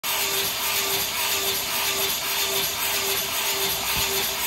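Two battery-powered leaf blowers, an EGO 56V and a RYOBI 40V brushless, running flat out while zip-tied to an office chair that they spin around. They make a loud, steady rush of air, with a tone that swells and fades about twice a second.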